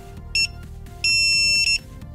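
Electronic beep sound effect: a short high beep, then a longer beep lasting about two thirds of a second, over soft background music.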